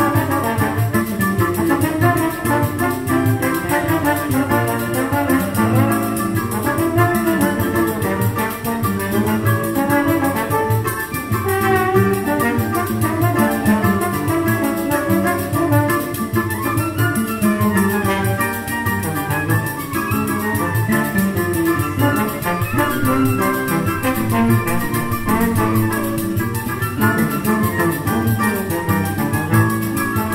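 A live choro ensemble plays an instrumental piece. Trombone and flute carry the melody over plucked guitar and cavaquinho-type strings.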